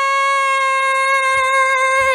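A man's voice holding one long, high, steady note, a drawn-out exclamation, that drops in pitch at the very end.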